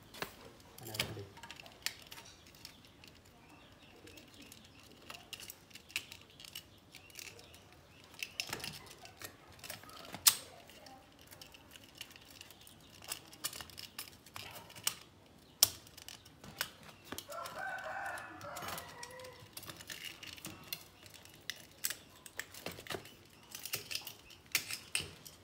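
Scattered light clicks and taps from wires and cords being handled. A rooster crows once, about 17 seconds in.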